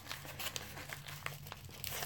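Packaging of a trading-card mail delivery being handled and unwrapped: a run of faint, irregular crinkles and crackles.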